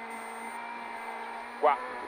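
Peugeot 208 R2B rally car under way, heard from inside its cabin: the engine holds a steady note, with a faint high whine above it.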